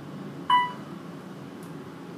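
Otis elevator car's electronic chime sounding one short, clear beep about half a second in, over the steady hum of the car travelling.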